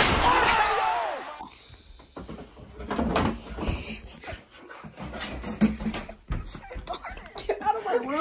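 A loud laughing, shouting voice in the first second. Then scattered knocks and thumps of people moving and handling things in a small room, with a sharp knock just before six seconds and brief bits of voice.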